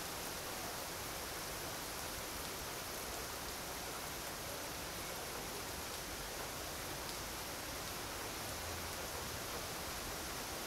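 Rain falling steadily: an even hiss with no tones, and a few faint drips or ticks.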